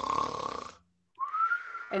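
A person doing a cartoon-style mock snore. First comes a rattly snoring breath of under a second, then, after a short pause, a whistled breath that rises and falls in pitch.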